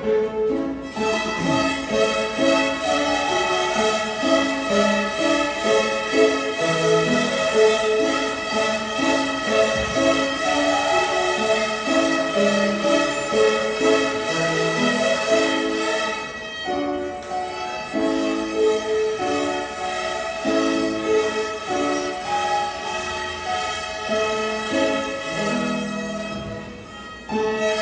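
A beginner string ensemble of young children playing violins together, sustained bowed notes over a moving melody. The sound thins briefly about sixteen seconds in.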